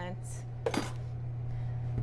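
A metal kitchen utensil knocking once against steel pans and dishes on a work counter, about two-thirds of a second in, over a steady low hum.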